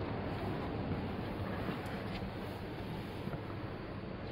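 Steady hall ambience: a wash of distant noise over a low hum, with a couple of faint clicks about two seconds in.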